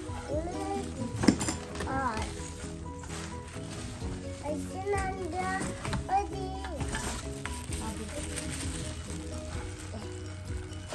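Children's voices chattering over steady background music, with plastic wrapping and bubble wrap rustling as it is handled. A sharp click about a second in.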